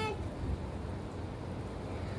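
The tail of a child's spoken word right at the start, then a steady low background rumble with faint hiss.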